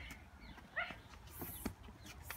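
A short rising, dog-like yelp just under a second in, with footsteps scuffing on a paved path.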